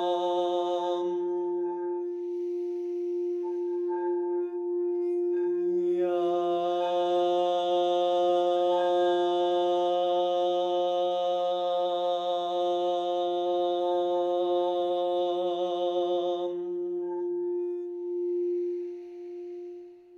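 A long, held toned 'ah' sung over a steady, unbroken ringing drone tone. A breath is drawn in a few seconds in before the held note starts again. The voice stops a few seconds before the end, leaving the drone ringing alone.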